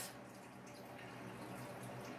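Quiet room tone: a faint, steady hiss with no distinct events.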